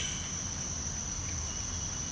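Insects droning steadily at one high pitch.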